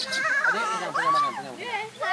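Excited human voices laughing and squealing in high, wavering pitches.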